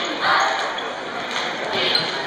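A basketball bouncing on a hardwood gym floor, with voices and crowd chatter echoing around the gym.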